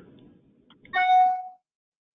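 A single short electronic notification chime from the conference-call system, about a second in and lasting about half a second.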